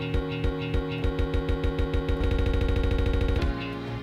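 Music track played through a Denon DJ SC5000 Prime media player, chopped into beat-synced loop rolls from its performance pads. The repeats stutter at a steady rate, quicken sharply about two seconds in, then release into the track a little after three seconds.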